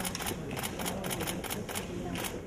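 Camera shutters clicking in quick bursts, about five sharp clicks a second.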